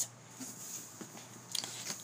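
Faint handling noise: a few light clicks and rustles of plastic-and-card Wallflowers refill packs being moved.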